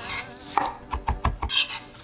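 Kitchen knife chopping on a wooden cutting board: a quick run of about five sharp strikes around the middle.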